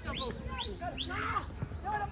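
A bird calling one high, upward-swooping note over and over, about three times a second, stopping a little over a second in, with people talking at the same time.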